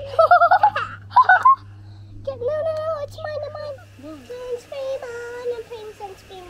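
Young children's high voices: loud excited squeals in the first second and a half, then sing-song calling with long held notes.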